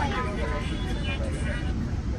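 Steady low rumble of a commuter rail car running along the track, heard inside the passenger cabin, with passengers talking over it.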